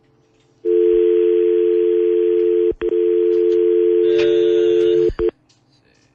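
Telephone dial tone on the line as a call is about to be placed: a steady two-note hum that starts about half a second in, breaks off briefly near three seconds, and cuts off suddenly about five seconds in.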